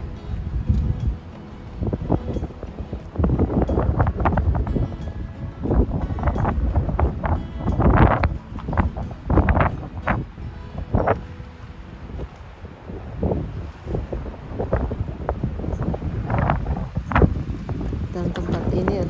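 Wind buffeting the microphone in irregular gusts, a heavy rumble with sharper blasts, over background music.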